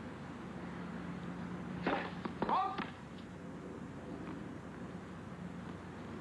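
Tennis arena ambience: a steady crowd hum, broken about two seconds in by two short loud shouted calls half a second apart, the second rising and then held.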